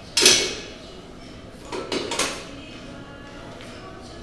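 Metal gym equipment clanking as weights and a bench are handled: one loud ringing clank at the start, then a quick cluster of clanks about two seconds in.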